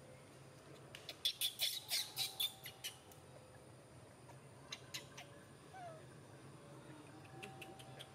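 A quick run of about ten short, sharp animal chirps, about six a second, then two more a couple of seconds later and a few faint ones near the end.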